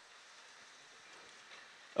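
Faint, steady outdoor hiss with no distinct event, swelling slightly near the end.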